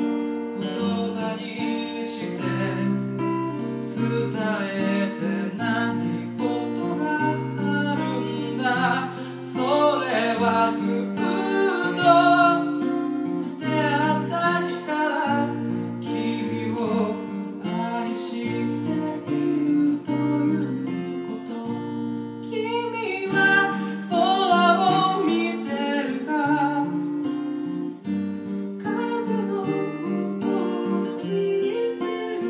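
Acoustic guitar strummed as accompaniment to a singer performing a slow ballad into a microphone, the voice dropping out for short stretches while the guitar plays on.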